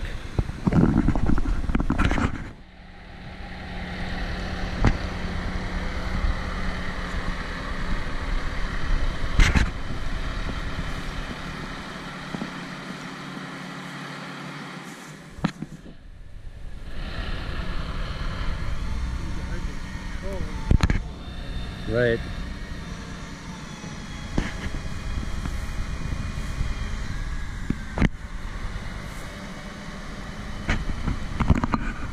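Heavy-equipment engine running steadily, with a few sharp knocks along the way.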